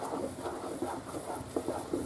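Wooden spoon stirring and folding thick salt-cod croquette dough in a frying pan: faint, irregular scraping with a few small knocks of the spoon against the pan.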